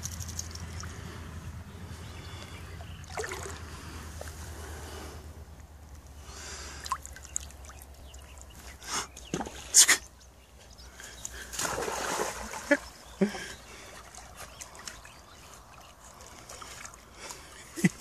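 Shallow pond water splashing and sloshing in a few short, irregular bursts, the loudest about ten seconds in, with quieter stretches between.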